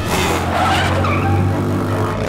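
Cartoon sound effect of a motorcycle engine revving hard as the throttle is twisted, with a steady low drone and tyres squealing as the bike speeds away.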